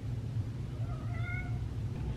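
A single short, faint high-pitched cry about a second in, lasting under a second and rising slightly in pitch, over a low steady hum.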